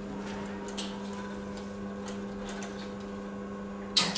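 Industrial sewing machines running in a workroom: a steady motor hum with a few faint light clicks.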